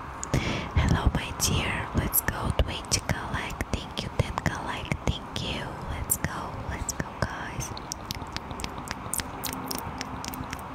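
A woman whispering right into a close microphone, ASMR-style, with frequent sharp mouth clicks and lip smacks.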